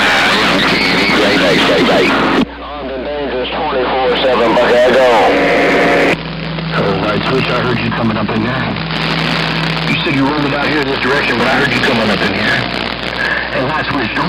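AM CB radio reception on 27.025 MHz (channel 6) through an Icom IC-7300: garbled, unintelligible voices of other stations over static. Transmissions cut in and out abruptly about two and a half seconds and six seconds in, and a steady low hum sits under the signal for a few seconds after the second change.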